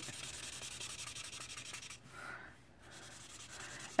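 Lémouchet alcohol marker tip rubbed quickly back and forth over coloring-book paper, a faint scratchy scribbling that pauses briefly about halfway through.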